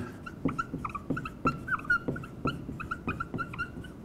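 Dry-erase marker writing on a whiteboard: a quick run of short, high squeaks, each with a light tap as a stroke begins, as the word "Macromolecule" is written out.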